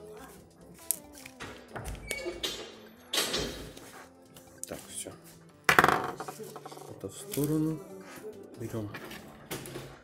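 Clicks and clatter of a smartphone's plastic housing being handled, with two louder scraping rustles about three and six seconds in, the second the loudest. Background music plays underneath.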